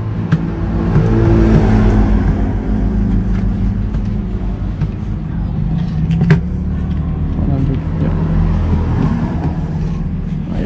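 A motor vehicle engine running close by, louder about one to three seconds in and then steady. A single sharp knock about six seconds in.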